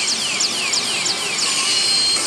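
Electronic sound effects from a Pachislot FAIRY TAIL slot machine: a run of quick, high falling sweeps, about three a second, over steady hall noise, played while the machine decides whether the bonus continues.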